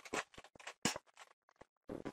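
Clear adhesive tape being pressed and rubbed onto an inflated rubber balloon: a few short crinkling, scratchy rustles in the first second, then a lull.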